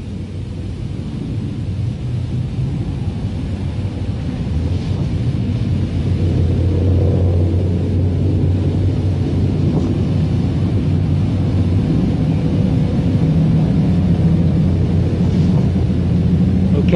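A low, steady rumble that grows louder over the first several seconds and then holds.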